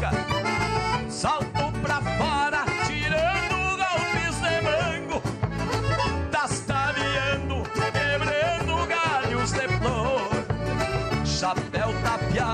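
Gaúcho folk band playing an instrumental passage: accordions carry the melody in quick, wavering runs over acoustic guitars and a steady beat on a large bass drum.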